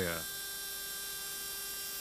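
A steady faint hum with a few thin, unchanging tones, electrical in character; no cutting or impact noise stands out.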